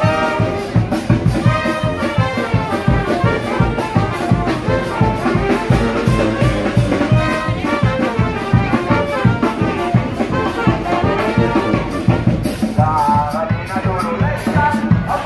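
A live brass band plays a lively tune on the march, the horns carrying the melody over a steady, evenly spaced drum beat.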